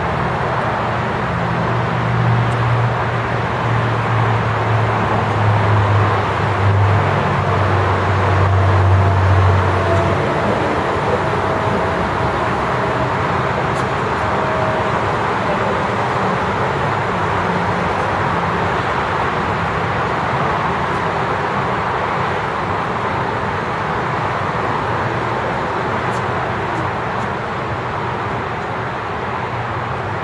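Steady road traffic noise, with a low engine hum that shifts in pitch a few times and stops about ten seconds in.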